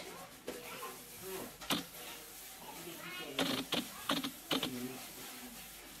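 A vinegar-soaked cotton pad wiped across an aluminium baking tray, making soft rubbing and a few short squeaks of the wet pad on the metal, mostly in the second half.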